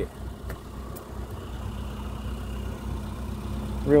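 1997 Ford Escort 55 van's small overhead-valve engine idling steadily, a low even rumble.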